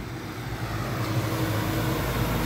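A vehicle engine idling with a steady low hum. A broad rushing noise builds gradually louder over it.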